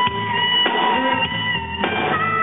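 Live blues band: an electric guitar holds one long, slightly bending note for a couple of seconds over the drums, with two sharp drum hits, one mid-way and one near the end.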